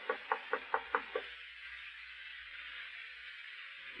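Rapid knocking on a door, a radio sound effect: a quick run of raps, about four a second, that stops a little over a second in, leaving faint recording hiss.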